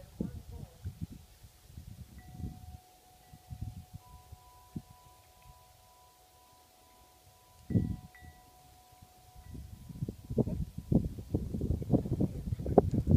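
Several long, steady ringing tones at a few different pitches, overlapping for several seconds, over low thumps and rumble from wind on the microphone, which grow denser near the end.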